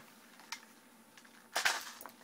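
Airsoft AK-style electric gun being handled: a light click about half a second in, then a short, sharper clatter of its parts near the end.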